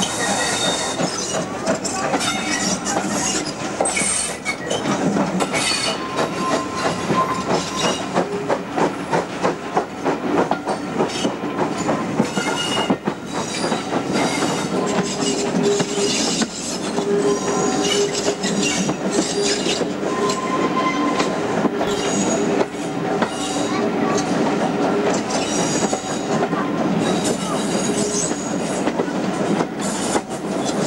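Steam-hauled passenger train heard from an open carriage window: a steady rhythmic clatter of the wheels over the rail joints, with a drawn-out wheel squeal as the train rounds a curve about halfway through.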